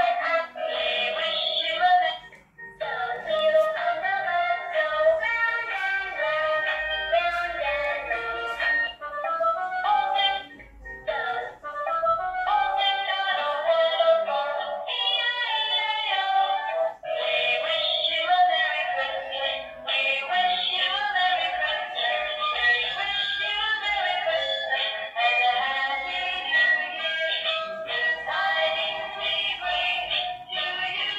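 Children's electronic music book playing electronic songs with a singing voice from its built-in speaker as pictures are pressed. The tunes run one after another, with short breaks about two seconds in and again around ten to twelve seconds in.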